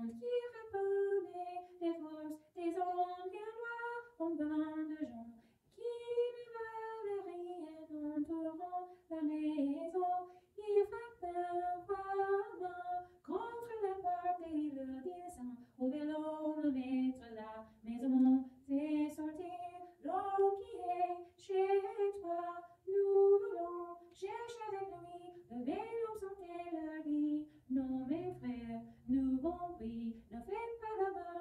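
A woman singing a melody in French, with long held notes that slide up and down in pitch, phrase after phrase.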